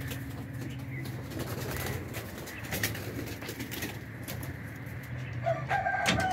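Domestic pigeons cooing in their loft, steady and low, with scattered clicks and knocks throughout.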